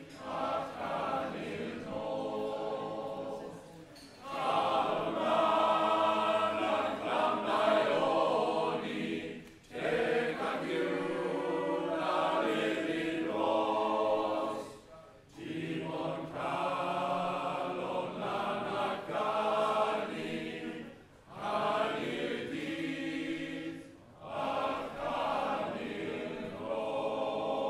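Welsh male voice choir singing together, in long phrases broken by short pauses every few seconds.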